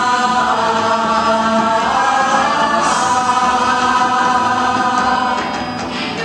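A group of women singing together in long held notes, the chord shifting about two seconds in and breaking off near the end.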